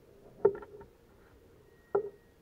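Plastic clicks and knocks from handling a small drone and its propellers: a sharp click about half a second in followed by a brief patter of lighter clicks, and another sharp click near the end.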